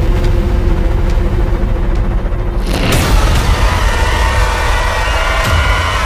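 Loud, deep booming rumble under a held low drone, from a horror channel's intro sound design. Near three seconds in a sharp hit cuts the drone and brings in several wavering higher tones over the rumble.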